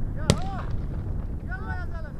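A single sharp gunshot report about a third of a second in, followed by people shouting.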